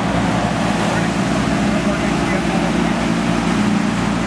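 A car engine running steadily with a loud, even rush of noise. There is no rise or fall in pitch or level.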